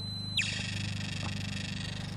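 An electromagnetic-field (EMF) meter's steady high electronic tone cuts off with a quick falling glide about half a second in, leaving a steady low hum.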